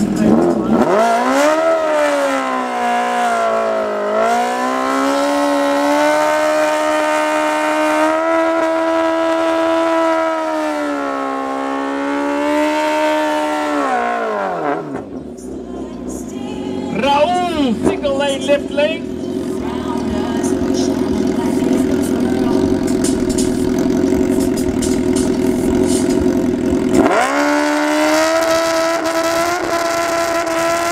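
Sport motorcycle engine revved up and held at high revs for a long burnout at the drag strip start, falling back after about fourteen seconds. It then runs lower while the bike rolls up to the line, with a brief high wavering squeal partway through, and is revved up again and held high near the end as it stages.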